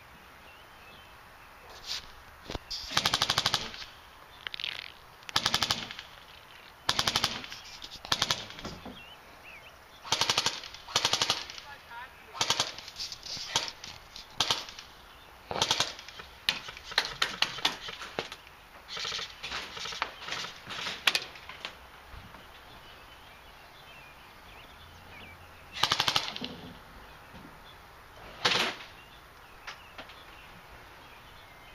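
King Arms M4A1 airsoft electric gun firing loud, short full-auto bursts, again and again with short gaps between them. The bursts come thickest from about a third of the way in to two-thirds, then after a lull come two last bursts near the end.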